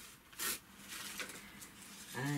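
A short crisp rustle of tissue paper being lifted and handled, about half a second in, followed by faint rustling and small handling ticks.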